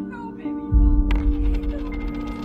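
Over sustained background music, a dull low thud comes a little under a second in. It is followed by a sharp metallic clatter and a rapid rattle, like a small coin dropping onto a hard floor and spinning down.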